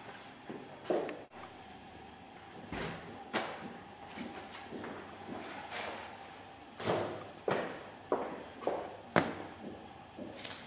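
Irregular knocks and clunks of kitchen handling around a stainless steel cooktop, such as a ceramic ramekin being moved and set down, with the stronger knocks in the second half.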